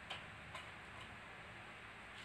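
A few faint light taps and clicks over low room hiss, three of them within the first second: a kitten's paws and claws striking the wooden bench as it bats at a feather wand toy.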